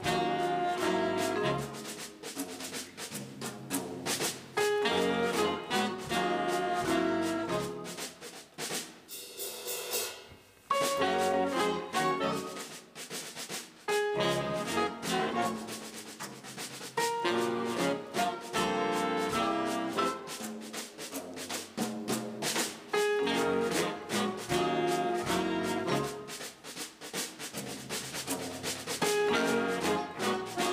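Big band jazz: the brass and saxophone sections play punchy ensemble phrases over a drum kit played with brushes. About ten seconds in, the horns drop out for a moment and only the drums are heard before the band comes back in.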